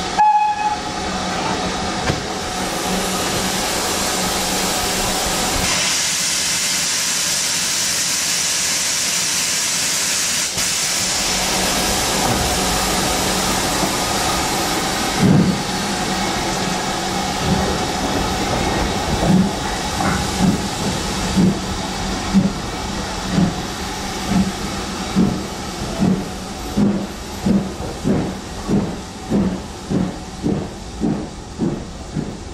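GWR Castle Class steam locomotive pulling away with its train: a steady hiss of steam and running noise, then its exhaust beats come in about halfway through, as regular chuffs that quicken from about one a second to nearly two a second as it gathers speed.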